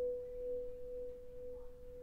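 Hand-held Himalayan singing bowl ringing on after a strike: one steady mid-pitched tone with faint overtones that wavers gently in loudness and slowly fades.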